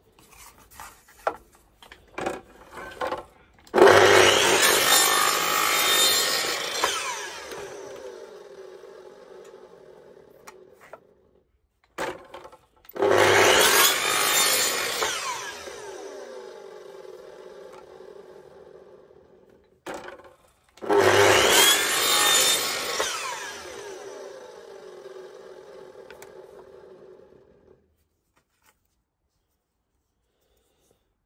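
Small bench table saw trimming a pressed recycled-plastic sheet square: three times the saw starts with a thump, cuts briefly, then winds down with a falling whine over several seconds. A few light clicks of the sheet being set on the saw table come before the first cut.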